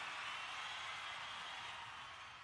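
Faint hiss slowly fading away, the last tail of a live Rif folk song recording after its final note has stopped.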